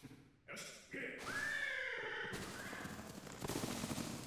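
Episode soundtrack: a horse whinnies about a second in, a bending, pitched call lasting about a second, followed by a steady rushing hiss through the last couple of seconds.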